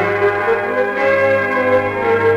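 Symphony orchestra playing held chords in an instrumental passage of a Polish Christmas carol, from an old 78 rpm shellac disc.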